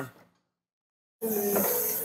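Dead silence for about a second, then the hydraulic pump motor of a 36-volt Nissan electric forklift starts and runs with a steady whine, working the mast.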